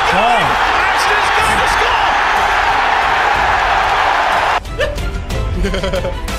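Stadium crowd roaring as a rugby player makes a try-scoring break, heard under excited TV commentary. About four and a half seconds in, the roar cuts off abruptly, leaving music and commentary.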